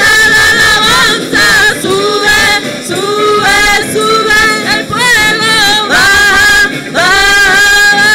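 Two women singing a worship song into microphones, amplified over the church sound system, with several long held notes.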